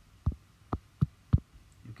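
Four light taps of a fingertip typing on an iPad's on-screen glass keyboard, one tap per letter, spaced unevenly about a third to half a second apart.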